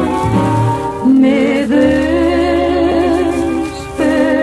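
Two women singing a Mexican ranchera in harmony, holding long notes with vibrato over a small band's guitar and bass, played from an old 78 rpm shellac record.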